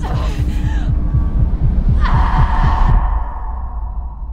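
Trailer sound design: a fast, low throbbing pulse like a racing heartbeat over a deep drone, with a breathy rush at the start. A bright, high ringing tone cuts in about halfway, and the whole thing drops away about three seconds in.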